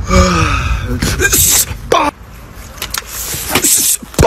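A young man's gasp, a short cry falling in pitch, then breathy exhales, one of them a sigh.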